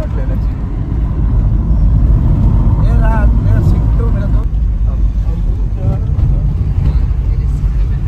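Steady low rumble of a moving car heard from inside the cabin: engine and road noise while driving, with a brief faint voice about three seconds in.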